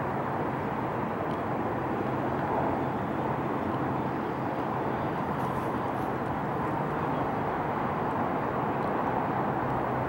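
Steady, unchanging noise with a faint low hum underneath, like a running engine or traffic.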